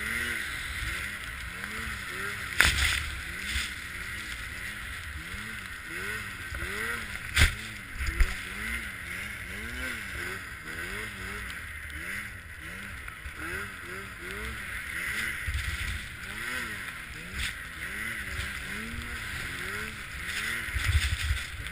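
Arctic Cat M8 snowmobile's two-stroke engine running through deep powder, its pitch rising and falling over and over with the throttle, over a steady rush of wind and snow. A few sharp knocks come through, the loudest about seven seconds in.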